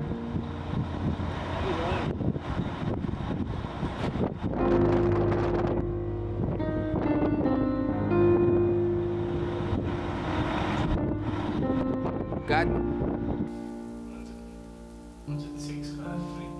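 Background film music with long held chords that change every second or two, over a noisy background in the first few seconds; the music drops in level near the end.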